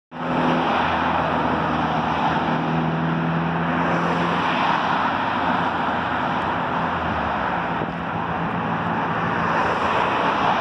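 Road traffic passing on a multi-lane street: a steady rush of tyre and engine noise, with a nearby car's low engine hum that fades after about four seconds.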